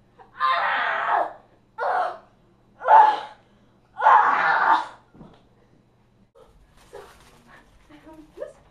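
A young woman's voice in four short, breathy outbursts within the first five seconds, the last one the longest; after that only faint sounds.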